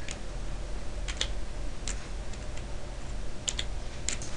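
A handful of sharp, scattered clicks from computer controls at the desk, about six, some in quick pairs, over a steady low hum.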